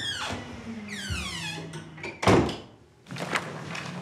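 A door shutting with a single solid thunk a little over two seconds in.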